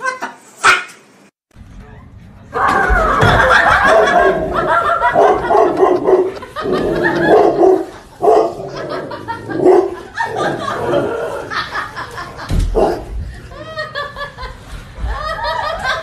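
People laughing loudly over a dog barking and vocalizing, starting about two and a half seconds in.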